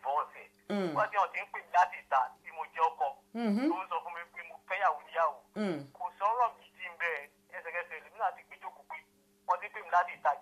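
Speech: a voice talking over a telephone line, with a steady low hum underneath.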